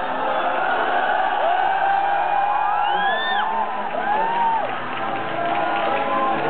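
Schoolboy audience cheering, with several long drawn-out whoops that rise and fall in pitch, over music.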